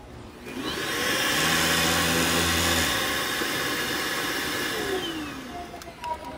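Handheld vacuum cleaner switched on: the motor whines up to speed within the first second and runs steadily. It steps down a little in level about halfway through, then is switched off and winds down with a falling whine just before the end.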